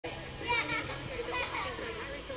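Children's voices calling and chattering in the background, high-pitched and indistinct, loudest about half a second in and again about a second and a half in.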